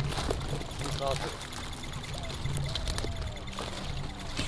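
Rustling and crunching of dry grass and brush as a person walks and a dog noses through it, a steady crackly noise with scattered small clicks.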